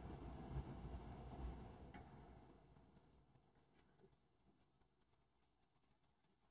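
Near silence, with a faint, even ticking about four times a second and a faint low rumble that dies away in the first couple of seconds.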